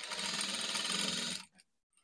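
Industrial sewing machine running steadily at speed, stitching a long gathering stitch through lace fabric, then cutting off suddenly about one and a half seconds in.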